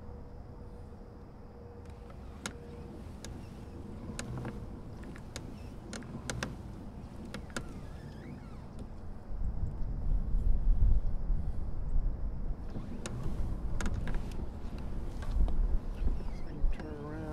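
Fishing tackle and a plastic kayak being handled: scattered sharp clicks and knocks from the baitcasting rod and reel. From about halfway in, a much louder low rumble with knocks sets in as the kayak is moved and turned.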